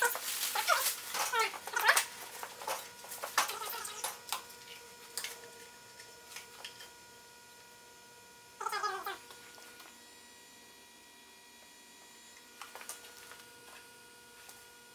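Plastic wrapping crinkling and rustling as a new small engine is unwrapped, with wavering squeaks mixed in during the first few seconds. One falling squeal comes about nine seconds in, and a few light knocks of parts being handled follow near the end.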